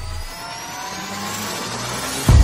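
Rising whoosh riser from an animated logo sting: a steady noisy swell with several tones gliding slowly upward.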